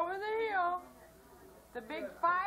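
A cat meowing: one drawn-out meow that rises and then falls in pitch, and a second one starting near the end.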